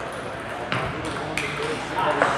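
Table tennis balls clicking off bats and tables, two sharp clicks about half a second apart, over voices in a large hall.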